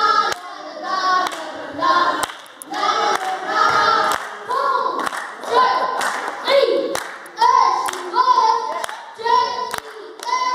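High-pitched singing in short held phrases, with hand claps keeping a beat about twice a second.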